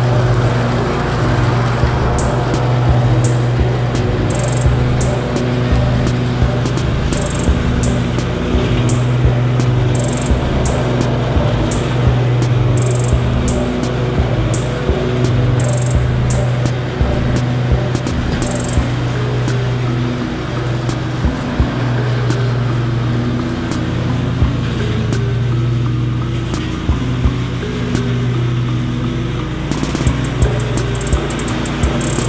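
Zero-turn riding mower's engine running steadily while cutting tall, weedy grass, under background music with a regular beat. A stepping melody comes in over the second half.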